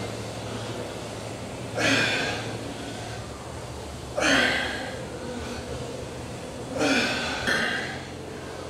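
A man breathing out forcefully with effort through repeated one-arm kettlebell windmills: four hard, breathy exhales, the first three about two and a half seconds apart and the last two close together near the end. A steady low hum lies beneath.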